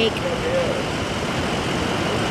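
Steady city street traffic noise heard from a moving pedicab, with a brief bit of a voice just after the start.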